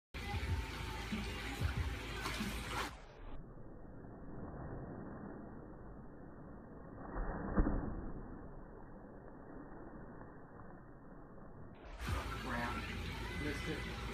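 Pool water splashing as a swimmer in a mermaid tail dives under. The dive is slowed down, so the splash sounds deep and dull, with one louder surge about seven and a half seconds in. Normal-speed pool water sounds come before and after it.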